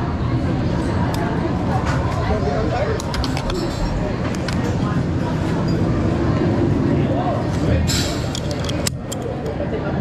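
Indistinct chatter of people in a ride station over a steady low background rumble, with a few sharp clicks.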